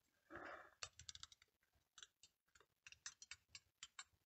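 Faint, scattered small clicks and taps at an irregular pace, with a brief soft rustle about half a second in: a hand handling the camera and its mount while repositioning it.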